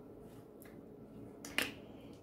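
A tarot card laid down on a hard, polished tabletop: one short tap about one and a half seconds in, against quiet room tone.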